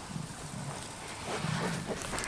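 Goat making a few low, short vocal sounds close to the microphone, the longest one about a second and a half in.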